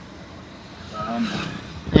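Steady low rumble of a car being driven, heard from inside the cabin. A short voiced sound breaks in about a second in, and a loud exclamation starts right at the end.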